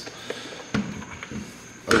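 A few faint, short knocks of a plastic motorcycle tail section and hand tools being handled on a table.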